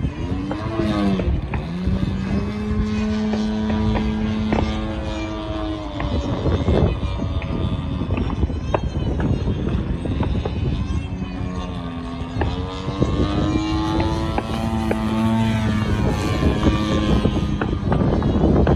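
Engine and propeller of a radio-controlled aerobatic model airplane in flight. The pitch dips at the start, holds steady for a few seconds, then rises and falls several times as the throttle and the plane's distance change through its manoeuvres.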